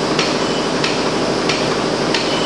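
Steady machine-shop din with a sharp click repeating evenly, about three every two seconds, from running multi-spindle automatic lathe machinery.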